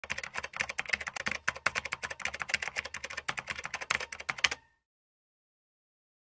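Rapid key-typing clicks, a typing sound effect that stops abruptly about three-quarters of the way through.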